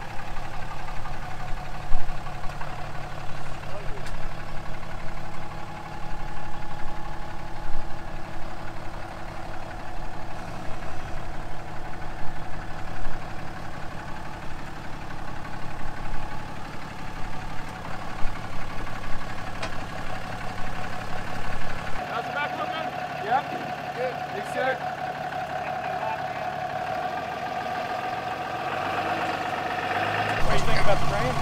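Ram 2500 pickup's engine running steadily at low revs as the truck crawls over rock. About 22 seconds in, the low rumble drops away and a steadier, higher-pitched drone remains.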